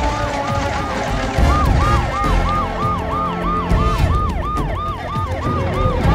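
Ambulance siren in a fast yelp, its pitch sweeping up and down about three times a second, over a low rumble.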